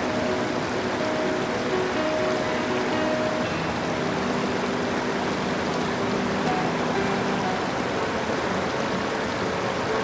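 River Elan running in shallow rapids over rocks, a steady rush of water, with soft background music of long held notes laid over it.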